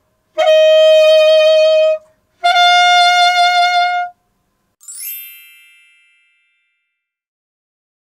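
Alto saxophone playing two held notes, each opened with a quick pralltriller flick up to the note above and back, the second note a step higher than the first. Just under a second after them comes a bright chime-like ding that rings and fades out.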